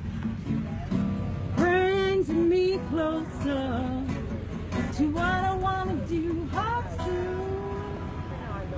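Live acoustic guitar with a voice singing long, wavering notes of a folk-style song; a last note is held near the end.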